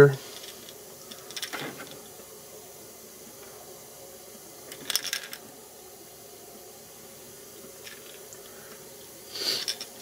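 A faint steady hum, with three brief soft clicks and rustles of hands handling a fishing lure in a metal clamp, one about a second and a half in, one halfway through and one near the end.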